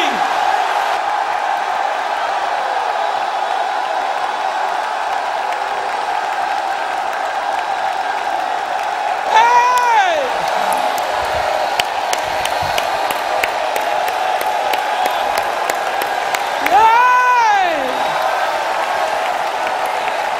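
A large congregation shouting and praising together, a steady crowd roar with scattered handclaps. Twice a single voice lets out a loud whoop that rises and falls in pitch, about halfway through and again near the end.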